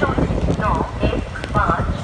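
People talking over the low rumble and clatter of a MEMU electric train's wheels on the rails as it rolls along a station platform.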